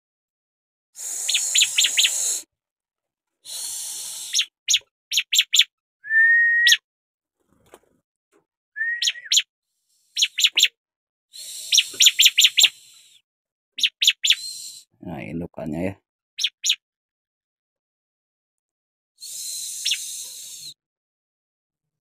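Bar-winged prinia (ciblek) calling: repeated bursts of rapid, high chirps and buzzy notes every second or two, with two short whistled notes about six and nine seconds in.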